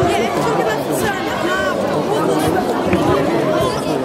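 Many overlapping voices chattering and calling out in a large sports hall, a steady babble with no one voice standing clear.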